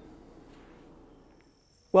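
Faint hiss that fades away, then a faint, high, steady insect drone from crickets just before a man starts to speak.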